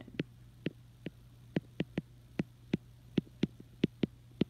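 About a dozen sharp, uneven clicks of a stylus tapping down on a drawing tablet as handwritten strokes are made, over a steady electrical mains hum.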